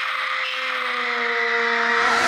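A boy's long, held scream, its pitch sinking slightly, over a rushing noise that swells in loudness.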